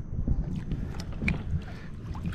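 Wind rumbling on an action camera's microphone, with a few faint clicks and light water splashes as a dip net is pushed into the water to scoop up a blue crab hooked on a chicken-baited line.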